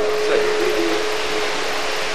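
Steady background hiss, evenly spread and unchanging in level, with a thin steady tone that fades out in the first half-second.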